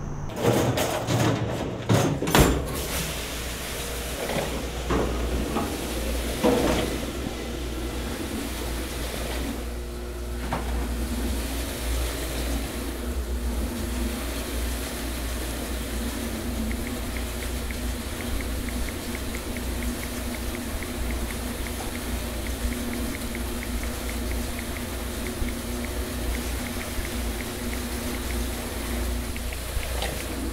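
A few knocks, then water running steadily into a stainless-steel commercial dish sink over a constant low hum, with faint regular ticking from about halfway through.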